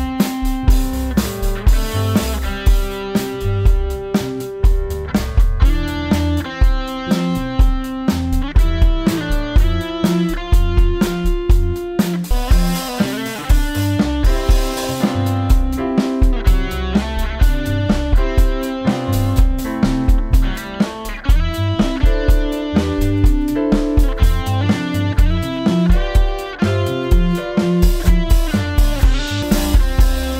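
A live rock band jamming an upbeat song: drum kit, electric guitar and keyboard playing a repeating piano line with a steady beat.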